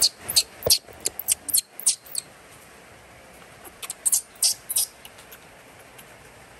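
Baby macaque squeaking: a quick run of short, high squeaks in the first two seconds, then a few more about four seconds in.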